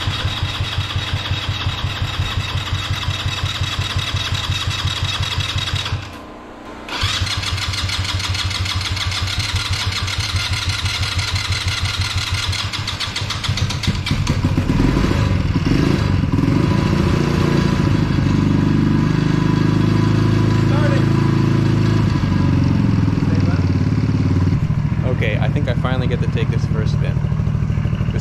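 Helix 150 go-kart's engine being cranked by its starter in a steady rhythmic churn. The cranking stops for about a second, resumes, and the engine catches about halfway through and runs on its own. It is now getting fuel, with the petcock's fuel and vacuum lines the right way round.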